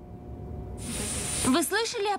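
A low rumble rising in level, with a loud hiss of air over it near the middle, from a cartoon soundtrack; a voice starts speaking about one and a half seconds in.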